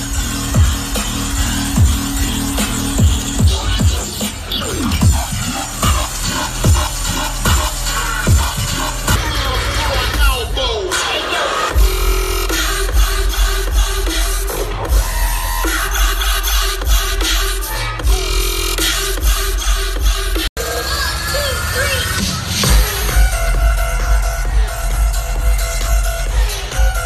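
Dubstep DJ set played loud, with a heavy, pulsing bass line that thins out twice for a few seconds before coming back in. There is one sudden, very brief dropout partway through.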